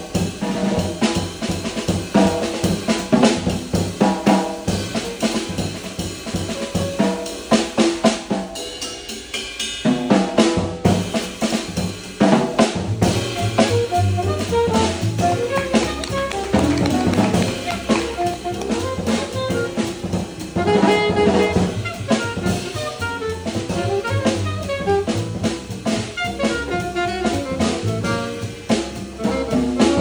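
A live jazz piano trio playing: acoustic drum kit with snare, bass drum and cymbals, grand piano and upright bass. The low end thins briefly about eight to ten seconds in, and from about thirteen seconds a strong bass line carries under the piano and drums.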